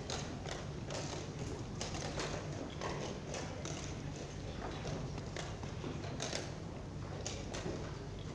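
Plastic chess pieces knocked down on a roll-up board and a chess clock being pressed in a fast blitz game: a string of sharp taps and clacks, about two a second. Underneath is the steady hum and murmur of a large playing hall.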